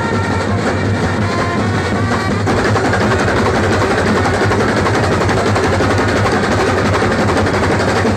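A Kerala band set, a brass band of snare drums and bass drums with trumpets, playing loudly. A horn melody rides over the drumming for the first couple of seconds, then a denser, continuous drum roll takes over.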